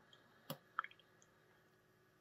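Faint click of a small tactile push button on a breadboard being pressed, about half a second in, with a couple of softer ticks just after; otherwise near silence.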